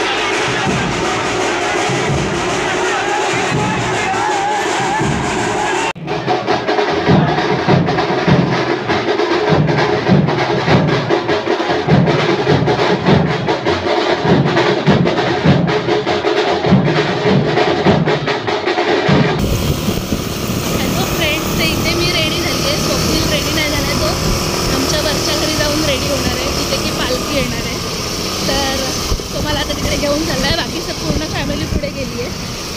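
Festival drumming over a crowd: a dense, steady drum beat with many rapid strokes from about six seconds in. It breaks off abruptly near twenty seconds into a different mix of crowd voices and music.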